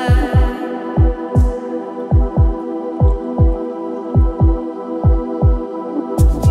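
Organic house track in a sparse breakdown: sustained synth pad chords over deep kick-drum thumps that come in pairs about once a second, like a heartbeat.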